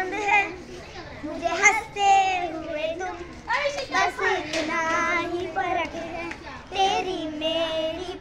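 Young girls singing a song together as they dance, their voices holding long notes.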